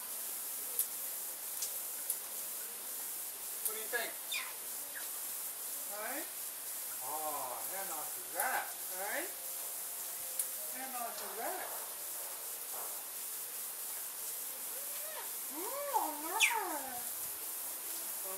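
Aviary misting nozzles spraying with a steady high hiss, while pet parrots give short warbling, pitch-bending squawks and chatter now and then, the loudest about two-thirds of the way through.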